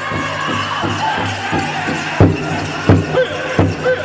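Pow wow drum group song: singers' high-pitched voices over a large shared drum beaten in a steady beat. About two seconds in, the drumbeats turn much harder and louder, about one and a half strokes a second.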